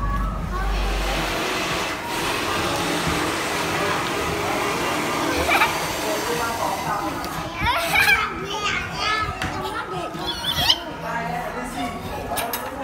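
Young children's voices chattering and calling out over background din, with high, rising exclamations growing busier in the second half.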